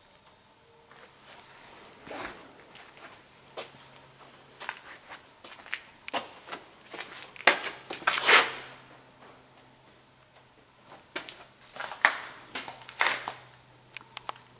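Someone moving about: irregular rustles, scuffs and crackles, the loudest around eight seconds in and again near the end.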